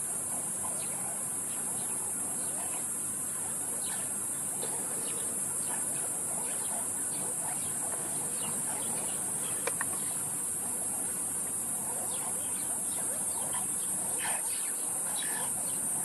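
A steady high-pitched chorus of night insects, with many short chirping calls throughout from a troop of banded mongooses mobbing a python.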